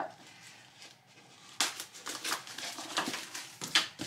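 Clear plastic wrapping on a cardboard box crinkling in a run of irregular rustles as it is cut with scissors and pulled off, starting about a second and a half in.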